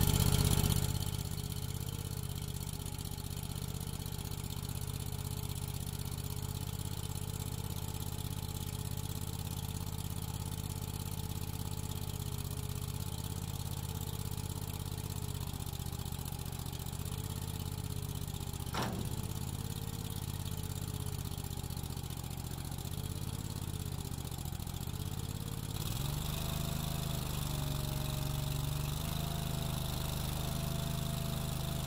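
Vermeer CTX50 mini skid steer's engine running steadily just after starting, with a wavering tone over it as the bucket is moved. A single sharp click comes about 19 seconds in. About 26 seconds in the engine note steps up and gets louder.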